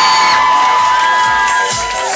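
Crowd cheering with a long, high-pitched scream held for nearly two seconds. A dance track's steady beat comes in about halfway through.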